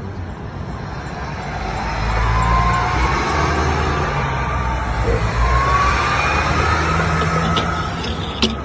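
Car driving along the street with its engine revving: a low rumble that grows louder about two seconds in, with slowly rising whines over it.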